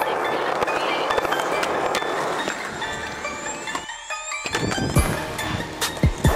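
Skateboard wheels rolling over rough pavement. Then a rising sweep and a music track with deep kick-drum hits come in about five seconds in.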